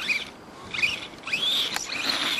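Electric motor and gears of an Axial radio-controlled truck whining in three throttle bursts, each rising sharply in pitch and falling away, the last one the longest, as its tyres spin and throw snow.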